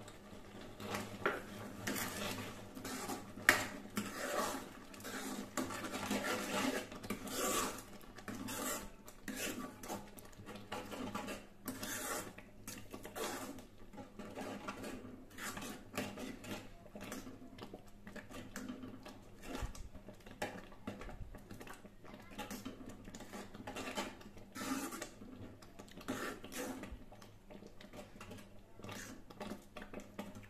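A metal ladle stirring thick milk-and-millet kheer in a kadhai, scraping irregularly against the bottom and sides of the pan with occasional clinks; the sharpest clink comes about three and a half seconds in.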